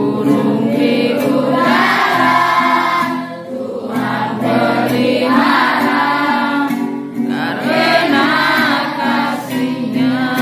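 A group of children singing a Christian worship song together over steady instrumental backing, in three long phrases.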